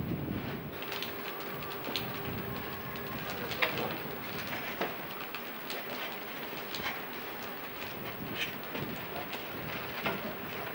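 Scattered light taps and clicks of brickwork, with one sharper knock about three and a half seconds in, over a steady hiss: red clay bricks being set and tapped into mortar.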